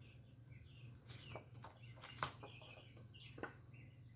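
Quiet room with faint handling of old photographs, a sharp click about two seconds in, and faint chirps in the background.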